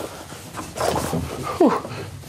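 Two short pitched vocal cries about half a second apart, the second a sharp whine falling in pitch.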